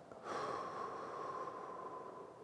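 A man's single long, slow exhale of about two seconds, a steady breathy rush that fades away near the end: a breath timed to a slow side-bending stretch.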